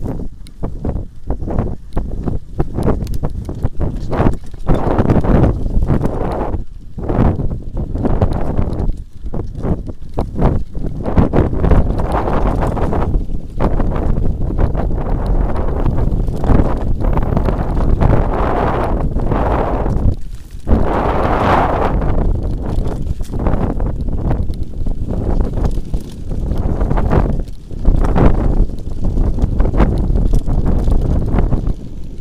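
A mountain bike descending a rough grassy dirt trail: the frame and camera mount rattle and knock irregularly over bumps, with the tyres rumbling on the ground. A rushing noise swells at times, loudest about twenty seconds in.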